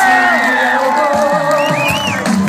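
A large crowd cheering and whooping over loud live music from a stage.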